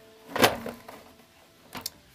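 One sharp knock from the plastic case of an Emerson CR-45 portable cassette recorder as it is turned over and set down on the table, then a couple of faint clicks near the end.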